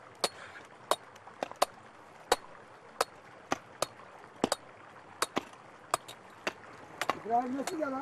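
Pickaxes striking rock and stony ground as men dig out stone: sharp, separate knocks at an uneven pace, about two a second, with two picks sometimes overlapping. A man's voice comes in near the end.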